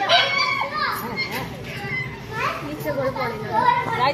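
Children's voices shouting and chattering over one another, several at once and high-pitched.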